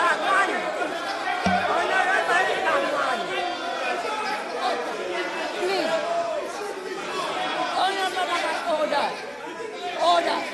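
Many voices talking over one another in a parliamentary chamber: members chattering and heckling while the house is out of order.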